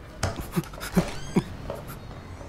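A person's short breathy vocal sounds, about four in quick succession, like panting.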